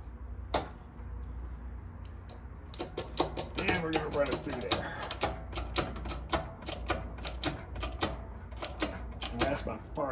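Hand-worked steel bench press pressing a tape-wrapped copper coin ring into a die: one sharp click about half a second in, then a rapid run of clicks, several a second, from about three seconds in until near the end.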